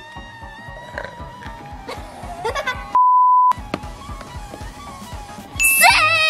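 Background music with a steady beat. About three seconds in, a single steady electronic beep lasting about half a second replaces all other sound, as in a censor bleep. Near the end a rising sound effect comes in over the music.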